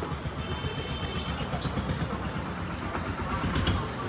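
A low, steady rumble that swells near the end, with a few faint clicks.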